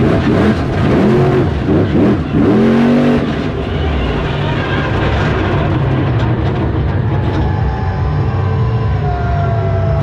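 Monster truck's supercharged V8 heard from inside the cab, revved in several quick rises and falls, then running at a steady, lower speed for the rest of the time.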